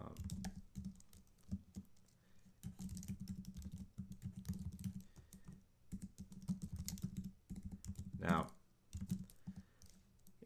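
Typing on a computer keyboard: quick irregular runs of key clicks broken by short pauses.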